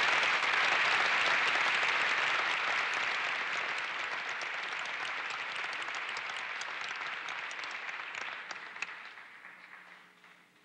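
Audience applauding in a hall, loudest at the start and slowly dying away, thinning to scattered single claps near the end.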